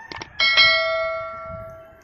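Two quick mouse-click sound effects, then a single bell ding that rings on and fades away over about a second and a half. This is the sound effect laid over a YouTube subscribe-and-notification-bell animation.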